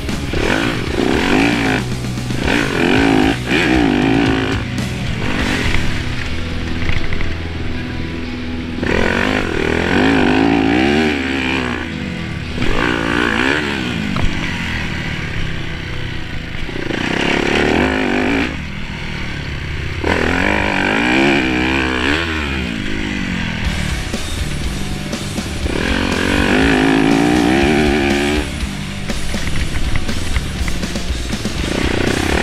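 2014 Yamaha YZ250F single-cylinder four-stroke dirt bike engine revving up and falling off again and again as it is ridden hard through the gears. Rock music plays under it.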